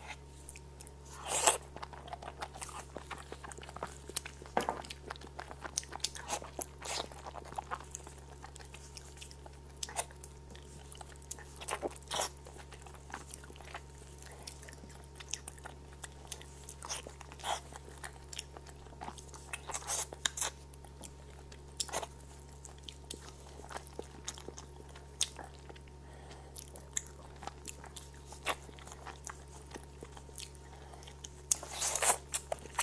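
Close-miked chewing of braised goat leg: irregular wet mouth clicks and crunches, loudest about a second and a half in and again near twelve and twenty seconds, over a low steady hum.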